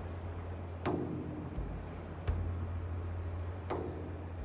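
A steady low hum with three faint sharp clicks, about one every second and a half.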